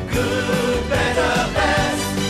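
Voices singing a held, wavering melody together over instrumental backing: the sung jingle of an old TV commercial.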